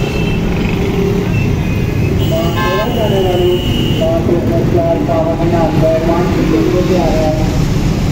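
Busy street traffic: a steady rumble of engines, with vehicle horns honking and a long high-pitched toot from about two to four seconds in.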